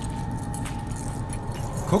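Steady street-traffic rumble with faint metallic jingling of coins handled in the palm, under a thin steady tone that fades out near the end.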